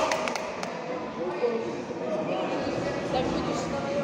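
A few sharp thuds of blows and bodies hitting the wrestling mat in the first second, under indistinct shouting from coaches and spectators that echoes in a large gym hall.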